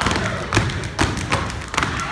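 Step team stepping on a wooden stage: boot stomps and claps in a quick, uneven rhythm of sharp hits, about eight in two seconds.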